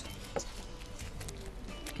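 A quiet lull of low steady hum with a few faint clicks and taps of a painted board and craft materials being handled on a table.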